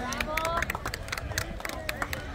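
Scattered hand-clapping from a small outdoor crowd, with a few people's voices beneath it.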